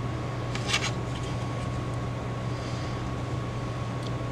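Steady low room hum with a faint steady whine, and one brief click of a plastic model-kit sprue being handled a little under a second in.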